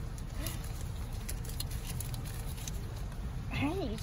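Steady low rumble of a car idling, heard from inside the cabin, with scattered light clicks and rustles.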